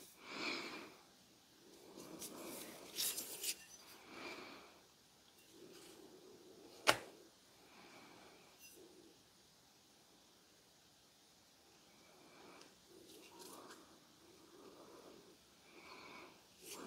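Faint handling noise of nitrile-gloved hands turning a steel axe head, with one sharp click about seven seconds in.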